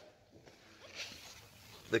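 Quiet pause with faint rustling handling noise and one brief soft sound about a second in.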